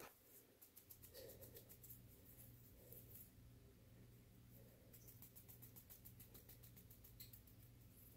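Near silence: faint soft rustling and light ticks of hands tossing flour-dredged shrimp in a stainless steel bowl, over a low steady hum.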